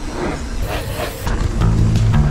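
Background music, guitar-led, with a bass line that comes in louder about a second and a half in, over a steady rushing noise.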